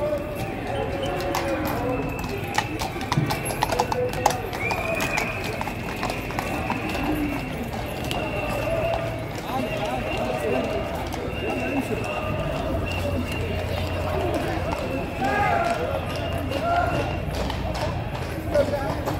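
Shod hooves of a Household Cavalry horse clip-clopping on stone paving at a walk, the sharp hoof strikes clearest a few seconds in, over the chatter of the surrounding crowd.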